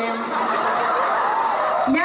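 Laughter: a couple of seconds of chuckling voices in place of words, between stretches of amplified speech.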